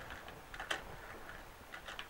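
Faint background hiss with a few soft clicks, one about a third of the way in and a couple more near the end.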